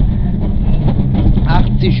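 Mitsubishi Lancer Evo IX rally car's turbocharged four-cylinder engine and tyre and road noise heard loud from inside the cabin at stage speed, running steady without a clear rev rise.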